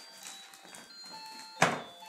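Faint rustling of wrapping paper being torn at by a dog, with a single sharp knock about one and a half seconds in.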